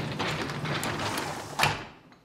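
A wooden cabinet door being handled on its metal hinges, with knocks and clicks over a shuffling noise. The loudest is a sharp knock about a second and a half in.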